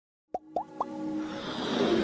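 Synthesized logo-intro sound effects: three quick rising plops about a quarter second apart, starting about a third of a second in, followed by a swell that grows steadily louder over a low held tone.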